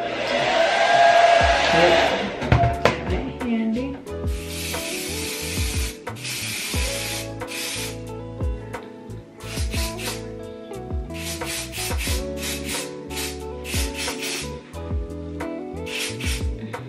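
Aerosol wig adhesive spray (extra firm hold) hissing in several bursts, the first about two seconds long, over background music with a steady beat.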